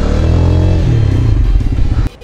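Honda CBR125R's single-cylinder four-stroke engine running while the motorcycle is ridden, its note shifting in pitch with the throttle.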